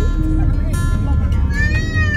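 Background music: a song over a low rumble, with a sung note that rises and falls near the end.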